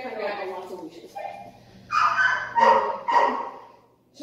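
A dog barks three times in quick succession, loudly, in the second half.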